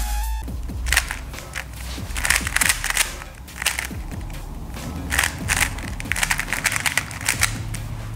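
Plastic 3x3 speed cube being turned fast by hand: rapid, irregular clicking and clattering as the layers snap round. Faint background music runs underneath, and a few dubstep notes from the intro fade out right at the start.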